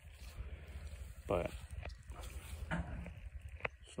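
A man says a couple of short words over a low, steady background rumble, with one sharp click near the end.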